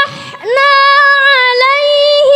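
A high voice chanting Quran recitation in the measured tartil style. A quick breath in is followed, about half a second in, by a long held note that scoops up into pitch and wavers slightly.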